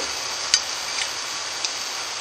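Warm olive oil sizzling steadily in a frying pan as anchovy fillets are slid in, with three faint light ticks.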